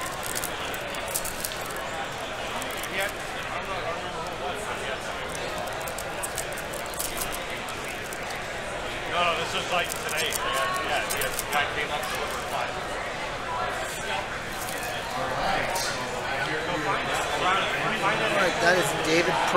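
Steady murmur of many voices in a crowded convention hall, with crinkling and clicking from trading-card packs being opened and handled close by.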